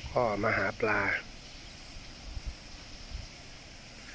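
Faint, steady high-pitched chirring of insects in the outdoor background, over a low rumble with a few soft knocks.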